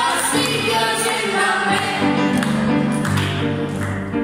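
Children singing into microphones, accompanied by a digital piano.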